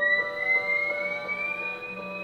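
Improvised guitar music: a thin sustained high tone glides slowly upward while a lower note is picked repeatedly, a few times a second.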